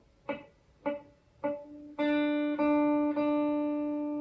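A single note on a hollow-body electric guitar, the D on the second string at the third fret, picked repeatedly while the fretting finger presses gradually harder. The first three plucks sound dead and choked off from too little pressure; from about two seconds in the note rings out cleanly and is picked twice more, sustaining.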